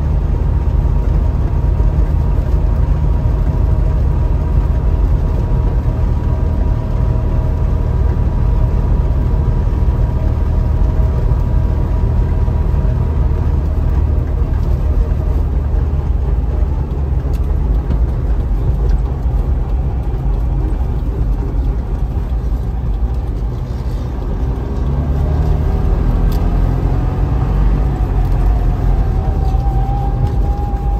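Trabant 601's two-cylinder two-stroke engine running under way, heard from inside the cabin together with road noise. Near the end the level dips briefly, then the engine note rises in pitch as the car picks up speed again.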